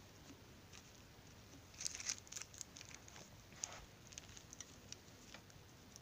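Faint scattered clicks and rustles of hands handling multimeter probes and alligator-clip test leads on a plastic-covered surface, with a cluster of them about two seconds in, while a diode is being connected for a forward voltage drop test.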